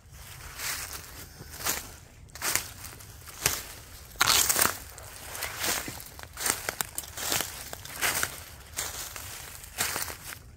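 Footsteps crunching and rustling through dry fallen leaves on a forest floor, about one step a second, with the loudest crunch about four seconds in.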